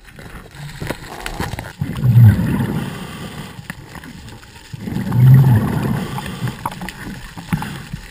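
Underwater: a scuba diver's exhaled bubbles rumbling out of the regulator twice, about three seconds apart. Faint clicks and knocks are heard between the breaths.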